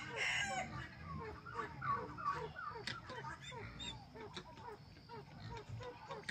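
Several captive fowl calling together: many short, falling notes overlapping, fairly quiet, with a slightly louder call at the very start.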